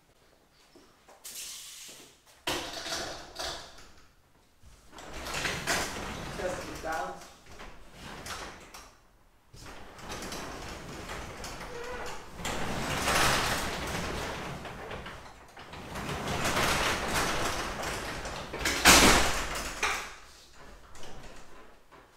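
Sectional garage door, released from its opener, being moved up and down by hand: panels and rollers rumble along the steel tracks in several long runs, with a loud bang near the end as it comes down.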